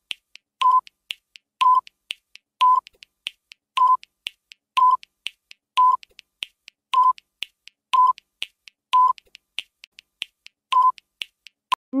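Quiz countdown timer sound effect: quick clicking ticks about three times a second, with a short beep on each second, about ten beeps in all.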